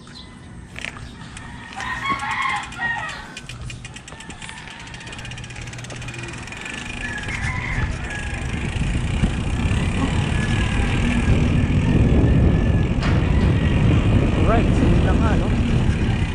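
Wind buffeting an action camera's microphone on a moving mountain bike, a low rumble that grows steadily louder as the bike picks up speed. A rooster crows about two seconds in.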